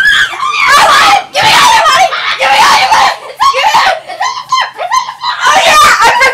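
Girls screaming in repeated high-pitched shrieks while scuffling in a play fight, mixed with some laughter.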